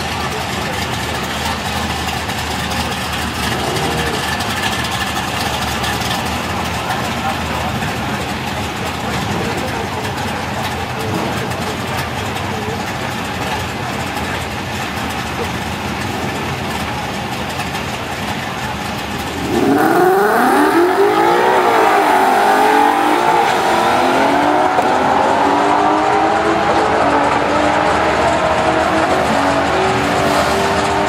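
Modified Toyota 86 and a second drag car idling at the start line. About two-thirds of the way in both launch hard, the engines revving up and dropping back at each gear change as they accelerate down the drag strip.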